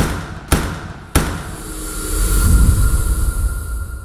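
Cinematic logo sting sound effect: three sharp impact hits about half a second apart, then a deep rumbling swell with a high steady tone that builds and then fades away.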